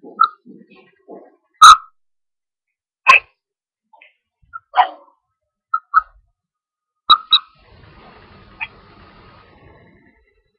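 A series of short, sharp animal calls, about eight, spaced irregularly. The loudest comes a little under two seconds in, and a faint steady hiss runs through the last two seconds.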